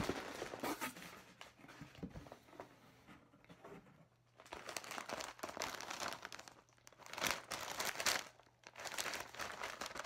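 White packing paper crinkling and rustling in irregular bursts as a paper-wrapped item is lifted out of a cardboard box and handled, with a near-quiet pause about three to four seconds in and the loudest rustling about seven seconds in.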